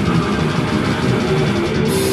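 Live death metal band playing: heavily distorted electric guitars over fast drumming, with a cymbal crash near the end.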